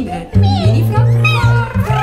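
Music: a double bass plays a line of short, changing low notes under several women's voices singing swooping, gliding lines.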